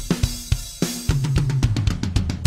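Multitrack recording of an acoustic drum kit played back soloed: kick, snare and cymbal hits, then a quick run of tom hits with a low ringing tone in the second half. The toms have been cleaned up with subtractive EQ and are also compressed in parallel.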